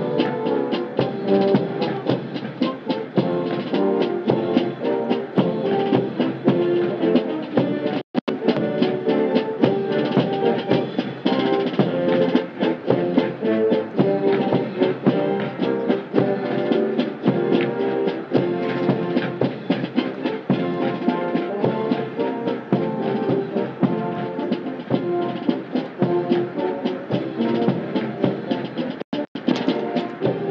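Military band playing a march, brass over a steady drum beat, accompanying a color guard on parade. The sound cuts out for an instant twice, about a third of the way in and near the end.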